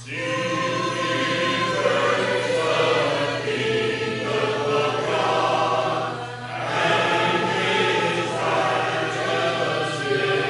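Church congregation singing a hymn a cappella, with no instruments, with a short break between phrases about six seconds in.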